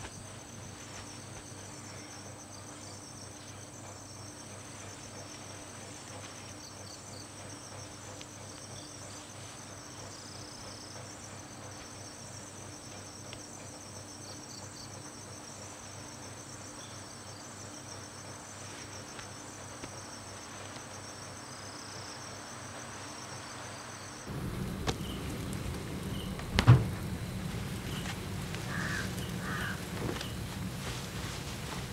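Crickets chirring steadily, a faint high pulsing trill over quiet night ambience. About 24 seconds in it gives way to a louder room ambience, with a single sharp knock a couple of seconds later.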